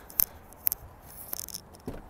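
A handful of short, sharp clicks and light rattles spaced through a quiet stretch, with a soft low knock near the end.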